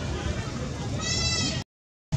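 A macaque gives one high, drawn-out call about a second in, over a constant low rumble. The sound cuts off abruptly near the end.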